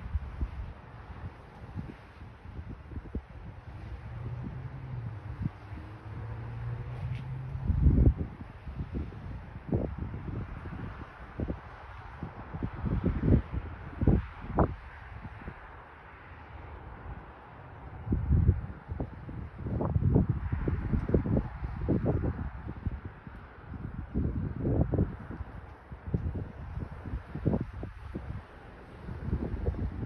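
Wind buffeting the microphone in irregular gusts, with a faint steady hum for a few seconds near the start.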